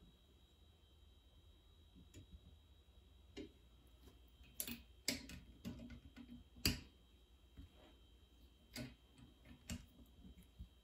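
Faint, scattered sharp metal clicks, about seven, the loudest a little past the middle, from a torque wrench and socket tightening the crankcase bolts of a two-cylinder Rotax aircraft engine.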